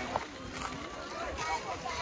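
Indistinct voices of people talking, with footsteps sounding as short knocks a few times.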